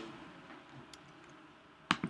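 One sharp computer click near the end as the pointer clicks into a text field, with a fainter tick about a second before, over quiet room tone.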